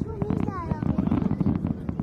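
Aerial fireworks crackling with many rapid small pops, under a crowd of people talking and calling out.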